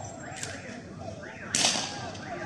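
A police weapon firing during a street riot: one loud sharp crack about one and a half seconds in, with a fainter one near the start, over shouting voices.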